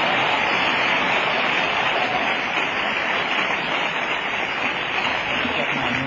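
Audience applauding, a dense and steady clapping.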